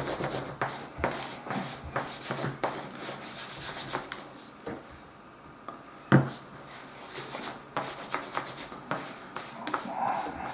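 A cloth in a gloved hand rubs Fiebing's antique finish paste into tooled vegetable-tan leather in quick back-and-forth strokes. The strokes ease off briefly before halfway. A single sharp knock a little past halfway comes as the glass jar of paste is handled, and then the rubbing resumes.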